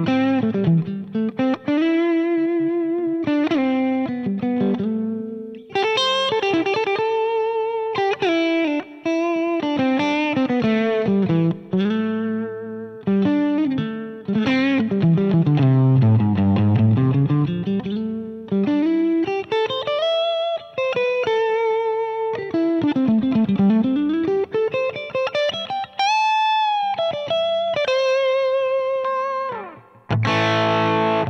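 Electric guitar played through a Line 6 Pod Go modeler with a drive block switched off for a cleaner tone: a lead line of sustained notes with wide vibrato and pauses between phrases. Twice, around the middle and later, a note swoops far down in pitch and back up.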